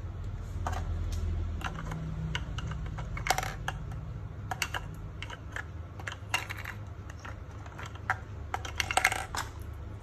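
Irregular small plastic clicks and clinks of AA batteries being handled and pushed into the battery compartment in the handle of a pistol-grip RC transmitter, over a low steady hum.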